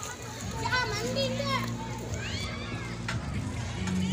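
Children playing in a swimming pool, their high voices calling out and shouting over one another.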